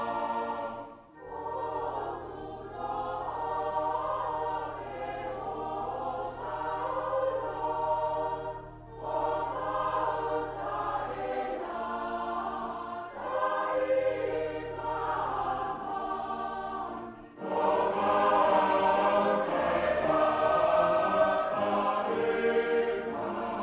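A group of Tongan mourners singing a hymn together in phrases, with brief pauses between the lines. The singing grows louder in the last few seconds.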